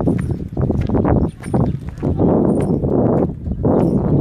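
Footsteps crunching on a gravel and dirt yard as the person filming walks, over rumbling noise on the phone's microphone.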